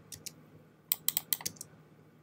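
Clicks from working a computer: a couple of single clicks early on, then a quick cluster of about six clicks in half a second around the middle, over quiet room tone.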